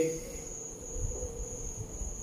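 Pause between words filled with quiet room tone: a steady high-pitched whine runs throughout, over a faint low rumble.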